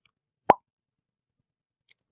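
A single short, sharp pop about half a second in, with silence around it.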